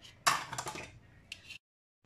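Kitchen dishware being handled: a sudden clatter about a quarter second in that fades over half a second, then a short, lighter scrape, after which the sound cuts out abruptly.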